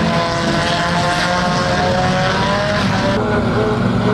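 Banger-racing vans' engines revving hard under load as they push and shove into a turn, with a sustained engine note that drifts slowly in pitch.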